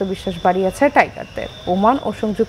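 A man talking in a low voice, with short pauses between phrases.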